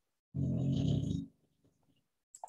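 A short, low, raspy vocal sound from a person, about a second long, heard through the video-call audio.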